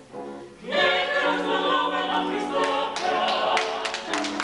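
Choral music: soft held chords, then a choir singing comes in much louder under a second in and carries on.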